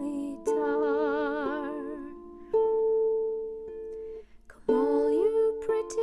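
Celtic harp and a soprano voice in D minor. The voice holds wordless notes with vibrato near the start and again about five seconds in, and plucked harp notes ring steadily through the middle.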